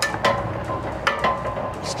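Sharp metal clicks and knocks from handling the steel bracket of an RV's folding entry stairs, with a blue spacer set in its slot. There are two pairs of clicks, about a second apart.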